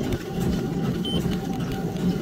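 Treadmill running steadily under a person working out, a low mechanical rumble of motor and belt, with one short high beep about a second in.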